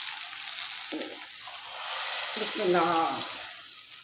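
Hot oil with fried onion, garlic, tomato and cumin (a tarka for dal) sizzling in a frying pan, a steady hiss that fades slightly towards the end.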